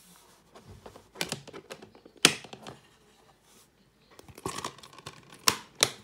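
A plastic Blu-ray case and disc being handled: the disc pushed onto the case's centre hub and the case shut, giving a series of sharp plastic clicks and clacks. The loudest comes about two seconds in, with a brief squeak and more clacks in the last two seconds.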